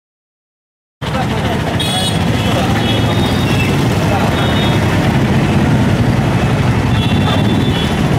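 Street background noise that cuts in abruptly about a second in: a loud, steady low rumble of traffic and outdoor air, with indistinct voices of a gathered crowd underneath.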